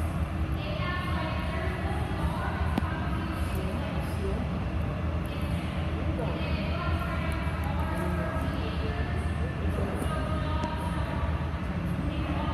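Echoing indoor pool hall: indistinct voices throughout over a steady low hum, with water splashing from a swimmer kicking.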